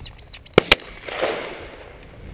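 Shotgun fired at a flushed game bird: two sharp reports close together about half a second in, then a rumbling echo that fades.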